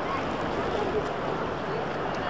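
Busy city street ambience: a steady wash of traffic noise with the voices of passing pedestrians.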